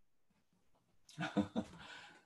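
A man's short, bleating laugh starting about a second in, after a moment of near silence.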